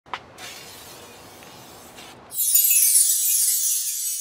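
An aerosol spray paint can hissing for about two seconds. It is followed by a sudden, louder glass-shatter sound effect with a falling shimmer, starting about two and a half seconds in.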